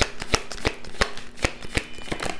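A tarot deck being shuffled by hand: a quick, irregular run of crisp card slaps and clicks, several a second.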